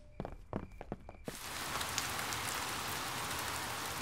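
Cartoon rain sound effect: a few separate drops tapping, then steady rain sets in about a second in and keeps falling evenly.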